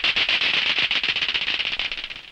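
Miracle Klackers clacking toy: two hard balls on a string knocking together in a rapid, continuous run of sharp clacks, many a second.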